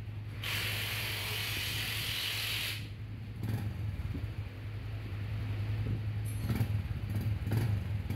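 Yamaha 135LC's single-cylinder engine idling with a steady low hum while it is put into gear to try the newly fitted Tobaki Super Clutch, with mechanical clicks from the gearbox. A loud hiss runs for about two seconds near the start, and the engine's note rises and wavers after about three seconds.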